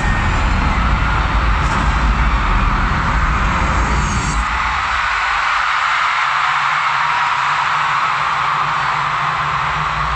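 A large arena crowd screaming steadily over loud concert intro music with heavy bass. About four and a half seconds in, the bass drops away, leaving the screaming over a thinner low drone.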